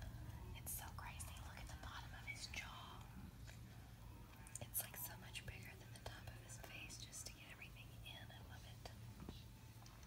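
Faint whispered speech and a few small clicks over a steady low hum.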